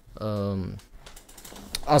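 A man's brief voiced sound, falling in pitch as it ends, followed by a run of light clicks from a computer keyboard being typed on.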